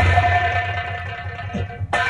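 Stage accompaniment music: a harmonium holds one steady note that slowly fades, with a few light drum taps near the end.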